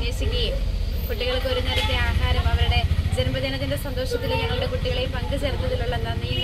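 A woman speaking in a conversational voice, over a steady low rumble.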